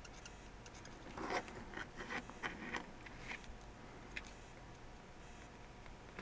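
Faint, irregular little ticks and scratches of an alcohol-ink marker's nib dabbing on a small silver metal charm, with most of them in the first half.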